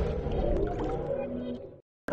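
Tail of a TV channel's logo intro music, with sustained electronic tones and a few short pitch glides, fading away and cutting off just before the end.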